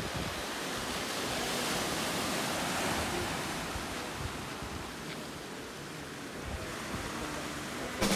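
Ocean surf breaking and washing over the rocks of a small cove: a steady rush of water that swells in the first few seconds and then slowly ebbs.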